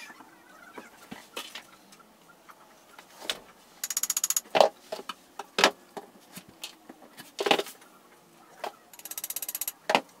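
Two runs of fast, even clicking, each a little over half a second, as screws are driven into the desktop with a hand screwdriver. Sharp knocks of tools and metal brackets against the board fall in between, the loudest about halfway through. The footage plays at double speed.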